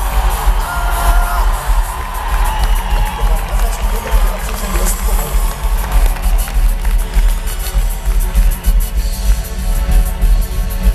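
Live band music played loudly through a concert PA, with a heavy pulsing bass, heard from within the audience as the crowd cheers and whoops.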